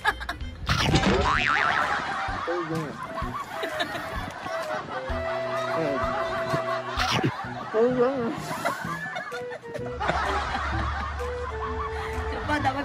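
People laughing and snickering over background music, one man laughing through a mouthful of marshmallows.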